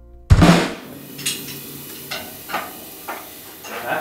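A single loud drum-kit hit ending the song about a third of a second in, after a moment of silence, ringing out over half a second. A few short, much quieter sounds follow.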